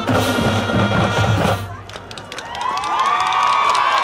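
High school marching band playing brass and drums, cutting off sharply about a second and a half in; after a brief lull, the crowd starts cheering, with rising, sustained whoops.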